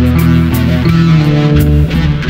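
Instrumental passage of a rock song: guitar and bass guitar playing held notes, with short sharp hits over them and a brief drop in level near the end.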